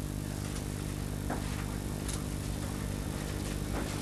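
A steady electrical hum with a buzz of evenly spaced overtones under faint tape hiss, the background noise of an old lecture-hall recording, with a couple of faint soft sounds in it.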